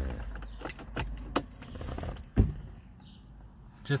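Low hum of a BMW N52 straight-six engine running, under sharp clicks and knocks of handling. A heavy thump comes about two and a half seconds in, after which the hum drops away.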